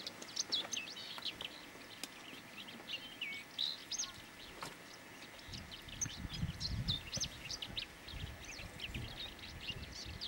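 Several birds calling, a steady run of short, quick chirps and whistled notes. About halfway through a low rumble joins them.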